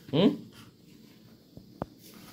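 A short rising "hmm" from a voice, then a low quiet stretch broken by a sharp click near the end.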